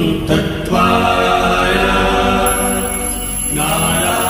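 A mantra chanted in long, held vocal phrases, with short breaks about half a second in and again near the end, over a steady low drone.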